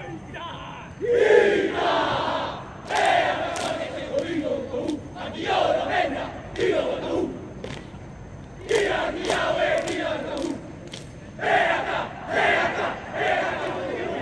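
A rugby team shouting a haka-style war cry in unison: loud chanted lines in short bursts with brief pauses between, punctuated by sharp percussive hits.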